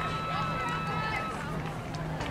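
Distant, overlapping voices of players and spectators calling out across a field hockey game, with a steady low hum underneath.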